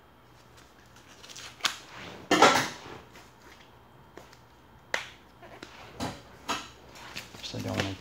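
Packaging being handled and opened on a wooden tabletop: short rustles and tearing of paper and plastic with sharp clicks and knocks, the loudest rustle about two and a half seconds in and a sharp click near five seconds.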